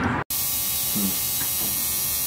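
Electric tattoo machine buzzing steadily as its needles work ink into skin; the buzz starts abruptly just after a brief cut.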